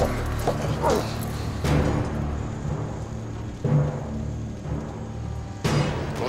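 Dramatic orchestral film score: sustained low tones punctuated by deep timpani-like drum hits about every two seconds.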